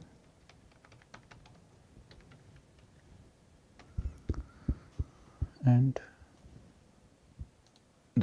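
Computer keyboard typing: faint scattered key clicks, then a quicker, louder run of keystrokes about four seconds in.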